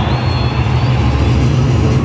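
A deep, steady low drone played over a stadium sound system, under the noise of a large crowd, with a long high whistle from the crowd in the first second.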